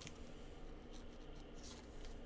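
Faint rubbing and a few light ticks as gloved hands handle and turn a thick relic trading card, under a low steady hum.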